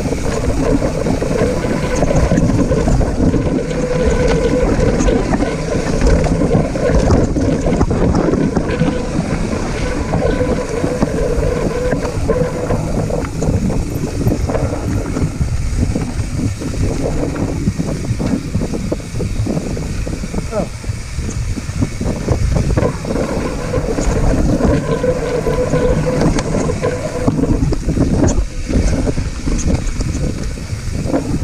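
Wind buffeting the camera microphone over the continuous rumble and rattle of a full-suspension mountain bike rolling over a dirt singletrack, with frequent small knocks from roots and rocks.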